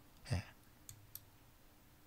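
Two faint, quick clicks about a second in, a quarter second apart, from a computer mouse.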